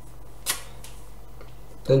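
A single sharp click, with a fainter one just after, over a steady low hum.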